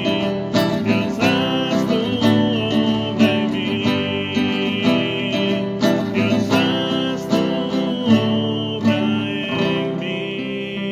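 Acoustic guitar strumming a slow worship song, with long held notes sounding above the chords.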